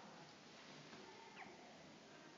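Near silence: faint room tone, with one brief faint high squeak about one and a half seconds in.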